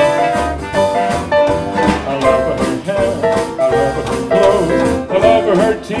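Small jazz band playing a swing tune: a brass melody of held notes over guitar, upright bass and drum kit.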